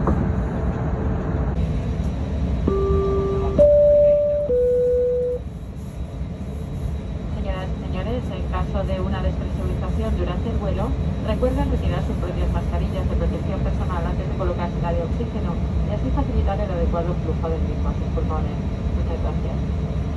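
Three-note electronic cabin chime (a low note, a higher one, then a middle one) a few seconds in, over the steady low rumble of an Airbus A321 cabin while the aircraft taxis. Faint voices follow.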